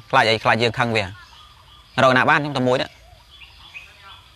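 A man speaking in a low voice, two short phrases with a pause between: only speech.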